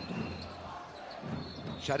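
Basketball being dribbled on a hardwood court, a few bounces about half a second apart, over the echo of an indoor arena.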